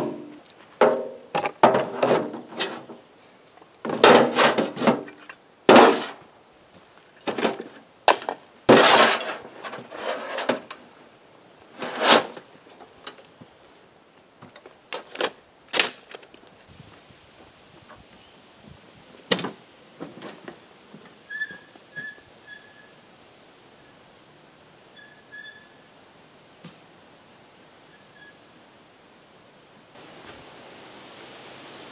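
Tools being set down and dropped into a steel wheelbarrow tray: a string of separate clunks and clatters, dense for the first twenty seconds or so, then thinning out to a few.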